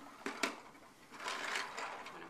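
Fisher-Price Corn Popper push toy being moved by hand, its plastic balls rattling and clicking inside the clear dome in a few short, faint bursts.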